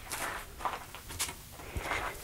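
A few faint, short scuffs and rustles, about four in two seconds, from a person shifting footing and handling tools and potting soil at a greenhouse bench.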